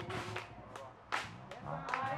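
A few sharp cracks or knocks, the loudest a little past a second in, in a short gap between sung choruses; singing comes back in near the end.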